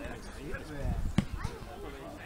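A football kicked once, a sharp thud a little over a second in, over distant shouting from players on the pitch.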